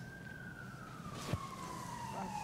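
A faint emergency-vehicle siren wailing in the distance: one thin tone that holds, then slides slowly down in pitch through the second half. A single soft click comes just past a second in.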